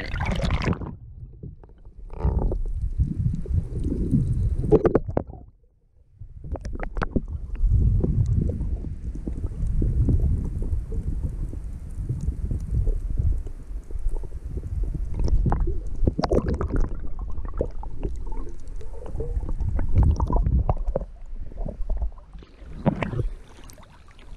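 Muffled underwater rumble and gurgle of moving water against a camera microphone held below the surface, with scattered small clicks. There is a brief dip almost to silence about six seconds in, and splashing at the surface near the start and end.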